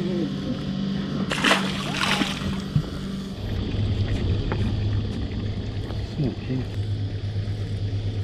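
Two quick splashes about a second and a half in as a small fish is dropped back into the water beside the boat, over a steady low hum that drops lower in pitch just after three seconds.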